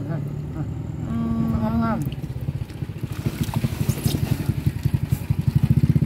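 A small engine running at idle, a steady low putter that grows louder in the second half. A brief voice speaks about a second in.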